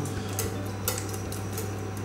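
Wire whisk stirring thick cooked green tomato chutney in a stainless steel pot, its wires scraping and lightly clinking against the metal in a run of small irregular ticks. The whisking breaks up the last large pieces of tomato.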